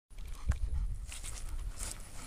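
A dog shifting and breathing softly beside its handler, with a single knock about half a second in and a low wind rumble on the microphone.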